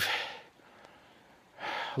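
A man's breathing in a pause between spoken phrases: faint breath noise, then a short audible inhale near the end before he speaks again.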